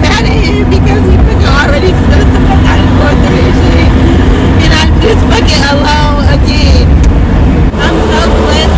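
A woman's voice crying and wailing without clear words, over the steady low rumble of a minivan cabin while driving.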